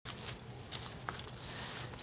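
Outdoor background noise picked up by a home video camera's microphone: a steady hiss over a low hum, with faint scattered crackles.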